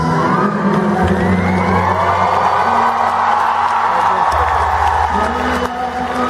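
Live music from a concert stage, an acoustic guitar with held low notes under it, while the audience cheers and whoops over the playing for a few seconds.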